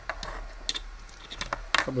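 A USB-A plug being pulled out of the USB socket on a phone charger's short lead: a few small, sharp plastic clicks and scrapes.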